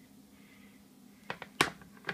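A few short, sharp knocks and clicks in the second half, the loudest about one and a half seconds in, as a plastic chopping board carrying a cooked pizza is set down on a kitchen counter.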